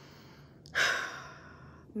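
A woman breathes in, then lets out one long, heavy sigh of discomfort that starts loudly and trails off.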